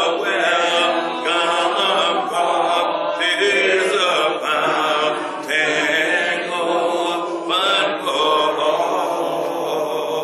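A hymn sung a cappella by several voices, a man's voice on a microphone leading, in long sustained phrases with no instruments.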